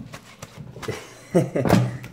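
A few soft knocks and handling noises as raw chicken is moved onto a baking tray, then a person laughs loudly about a second and a half in.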